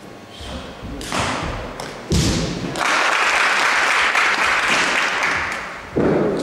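Thuds of a wushu performer's feet stamping and landing on the competition carpet, about one and two seconds in and again at the end, with a loud, steady rushing noise lasting about three seconds in between.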